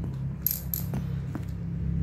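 Chrome steel sliding T-bar set down on a paper pad: a brief metallic jingle, then two light taps, over a steady low rumble of road traffic.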